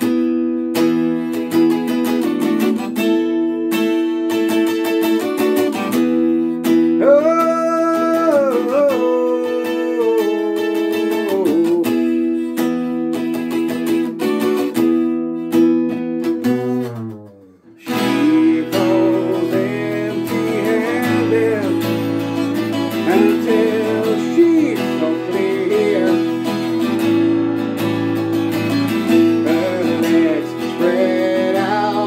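A 12-string Craviola acoustic guitar is played steadily, with chords ringing. About halfway through, the whole sound slides down in pitch and nearly dies away for a moment, then the playing resumes.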